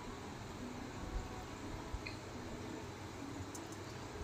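Faint, steady sizzle of chicken and tomato masala frying in a pot, with a couple of soft low knocks from a spatula stirring it.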